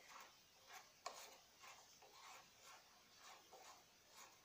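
Faint rubbing scrapes, with a single light click about a second in, as a metal part is twisted by hand down onto the transmission shaft of a washing machine's mechanism.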